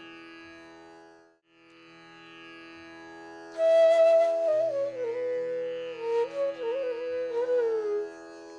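Bansuri (bamboo flute) playing a short alaap in Raga Hameer over a steady drone. The flute enters about three and a half seconds in on a held high note, then slides and ornaments down onto lower notes. The drone cuts out briefly about a second and a half in.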